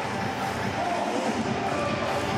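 Steady stadium crowd noise from the stands during a football match, with faint voices in it.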